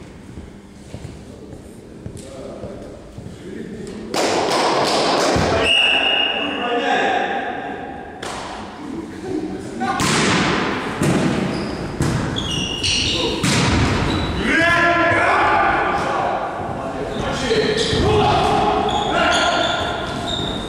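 Volleyball rally in a large, echoing gym: the ball is struck by hands and thuds on the wooden floor several times, with players' voices between the hits. It is quieter at first, and play gets loud about four seconds in.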